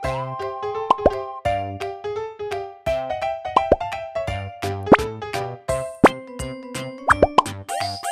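Bright children's background music with a regular beat and keyboard-like notes, overlaid with several short rising 'bloop' plop sound effects.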